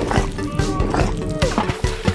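Upbeat background music with a steady beat, with a brief animal-like cartoon sound effect mixed in.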